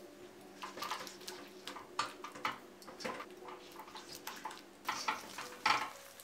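Slotted spatula stirring thick, wet tomato-onion gravy in a nonstick wok: soft wet scrapes and light clicks, irregular and repeated, over a faint steady hum.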